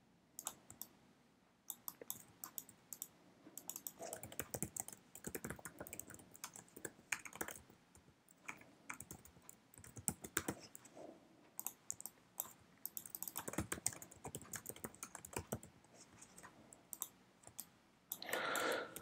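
Typing on a computer keyboard: runs of quick key clicks with short pauses between them.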